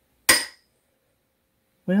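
A single sharp clink of a metal spoon striking a china cup, as coconut oil is knocked off the spoon into it, with a brief ringing that dies away quickly.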